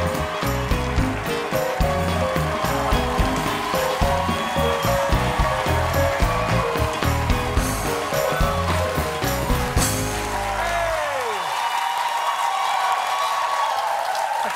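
A live studio band plays upbeat walk-on music with a steady bass beat under studio-audience applause. About ten seconds in the band finishes with a falling slide, and the applause carries on alone.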